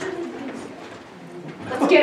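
Actors' voices on a small stage: low, quiet vocal sounds, then a short loud vocal outburst near the end.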